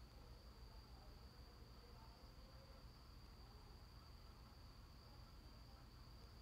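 Near silence: room tone with a faint, steady, high-pitched whine and a low hum.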